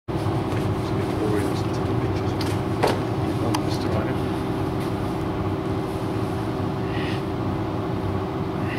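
A steady low mechanical hum, with faint indistinct voices, a couple of sharp knocks about three seconds in, and a brief high call near the end.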